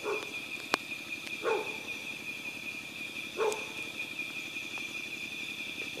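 Night insects keep up a steady high-pitched drone. Three short barks from a distant dog come at the start, about a second and a half in, and about three and a half seconds in, with a single sharp click just under a second in.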